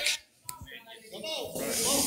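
A handheld microphone cuts out briefly with a click about half a second in, picks up faint voices, then carries a steady high-pitched hiss that swells from about a second and a half in.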